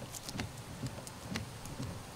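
A UV-exposed Rain-X Silicone Endura wiper blade sweeping across a wet windshield. It is faint, with a few light ticks and no loud squeak.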